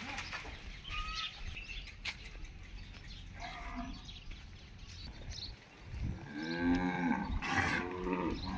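Zebu cows mooing: one long, low moo begins about six seconds in and grows louder toward the end.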